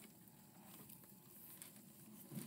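Near silence: room tone, with a few faint soft rustles from books and objects being handled on a desk.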